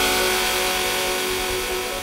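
Dubstep mix with the bass and drums dropped out, leaving held synth tones over a hiss that slowly fade away: a breakdown between tracks.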